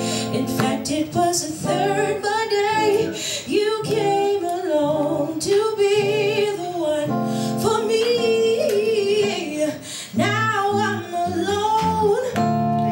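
A woman singing long, held notes with a wavering vibrato into a microphone, over acoustic guitar accompaniment.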